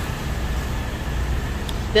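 Steady low rumble of road vehicles and traffic.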